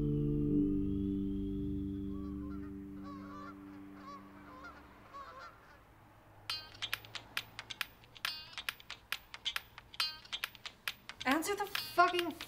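Background music fading out, then a phone ringing in a rapid, pulsing pattern from about six and a half seconds in.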